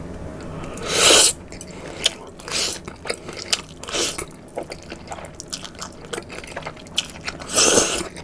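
Mouth sounds of eating spicy Buldak noodles with pork belly: a loud noodle slurp about a second in and another near the end, a smaller one in the middle, with chewing and many short wet clicks and lip smacks between.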